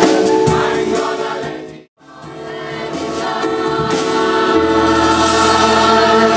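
Gospel choir singing together in several parts through a PA. The singing fades out to a brief silence about two seconds in, then swells back up and carries on.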